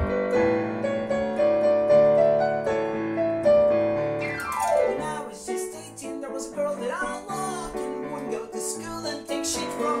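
Piano played on an electric keyboard, with held chords and then a quick downward run of notes about four seconds in. A man's singing voice comes in over the piano from about halfway through.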